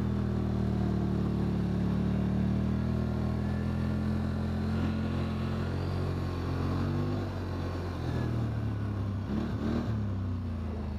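Polaris Sportsman 850 XP ATV's twin-cylinder engine running steadily under way on a trail. It eases off about seven seconds in, and its pitch wavers near the end.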